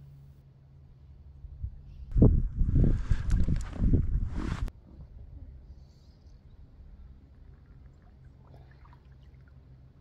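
Water splashing and sloshing in the shallows as a released rainbow trout kicks away, starting about two seconds in and cutting off suddenly a couple of seconds later.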